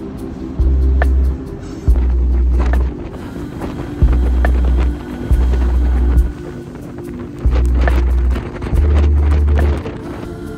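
Background music with a deep bass note that pulses on and off about every second and a half, under steady held tones.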